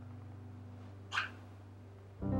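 The last held notes of a soft guitar track fading out, broken about a second in by one brief, high-pitched cat mew.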